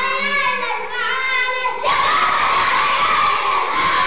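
A group of boys chanting and shouting together with raised voices. About two seconds in, the shouting swells into a louder, fuller group cry.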